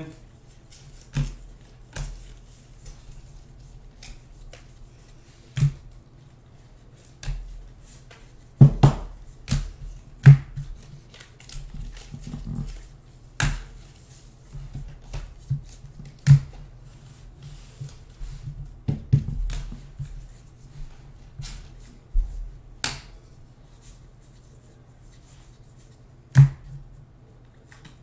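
A stack of baseball cards being flipped through by hand: irregular snaps and slaps of card stock against card stock, some much louder than others, over a steady low hum.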